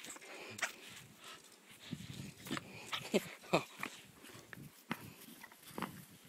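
Blue-nose pit bull puppy playing with a rubber football: scattered knocks and scuffs from mouth and paws on the ball, with a few short vocal sounds falling in pitch about three seconds in.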